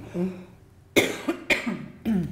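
A woman coughs twice into her hand, the first cough about a second in and the second half a second later, after a brief murmured 'mm'.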